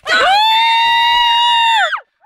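A young woman's loud, high-pitched scream of excitement, a cheer held level for almost two seconds that rises at the start and drops away near the end.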